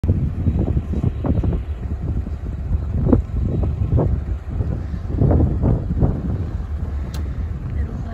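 Wind buffeting the microphone: a loud low rumble broken by irregular gusty thumps.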